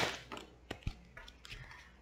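Tarot cards being shuffled by hand: the clicking of the cards trails off in the first half second, then two sharp card clicks come a little under a second in, followed by faint handling noise.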